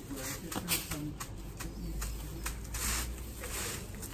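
A thatcher's leggett, a flat wooden dressing tool, knocking and dressing the ends of the reed thatch into place: a series of irregular dull knocks with rustling reed, and a longer rustle about three seconds in.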